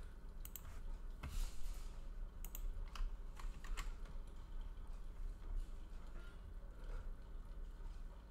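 Computer keyboard keystrokes and mouse clicks, faint and irregular.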